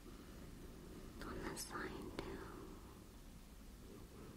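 A brief whisper about a second in, lasting about a second, with a soft click near its end, over a low steady hiss.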